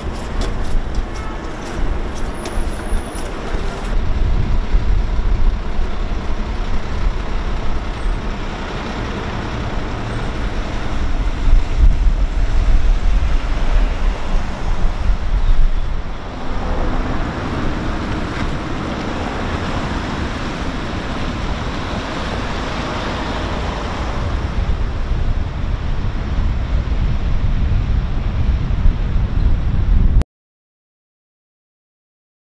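Road traffic and vehicle engines, a steady low rumble with a louder, brighter swell for several seconds past the middle, as a vehicle goes by.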